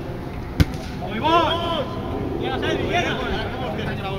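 A single sharp thump about half a second in, a football being kicked, followed by men shouting across the pitch with rising and falling calls.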